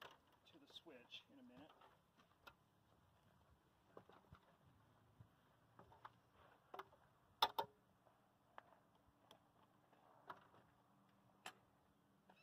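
Near-silence with scattered faint clicks and knocks as a stepladder is climbed and the fence energizer is handled, the sharpest two close together about halfway through. Faint voices briefly near the start.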